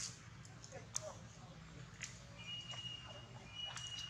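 Faint outdoor ambience with a low murmur of distant voices and a steady low hum. There are a few light clicks, and a thin, steady high tone sets in about halfway through.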